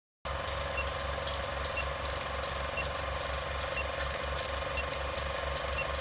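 Produced intro sound bed under the title card: a steady hum with a fast low pulse and a faint high tick about once a second. It starts just after a short silence and stops right before the interview begins.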